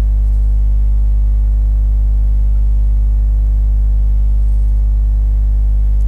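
Steady electrical mains hum, a low buzz with a stack of overtones, running unchanged and loud in the recording.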